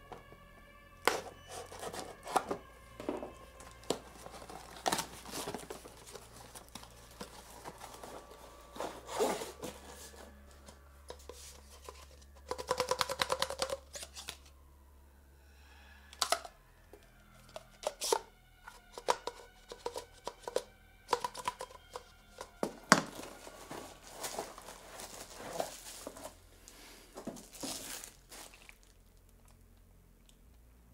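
Cardboard packaging and plastic chair parts being handled during assembly: irregular rustling, crinkling and tearing of packaging, with scattered knocks and clicks. About twelve seconds in there is a rapid rattling burst lasting about a second and a half.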